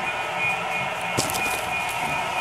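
Electric model trains running on a layout: a steady motor whine over the rumble of wheels on track, with one sharp click just over a second in.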